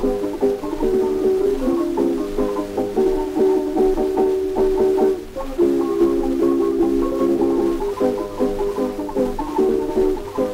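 Tamburica orchestra playing the bećarac, heard from a 1907 acoustic 78 rpm Gramophone disc: plucked melody and chords with a thin, narrow sound and surface hiss. The playing dips briefly about five seconds in, then a new phrase of held notes begins.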